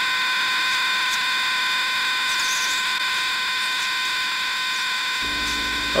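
A steady, buzzy electronic tone held on one unchanging pitch for about six seconds, ending as the room sound returns near the end.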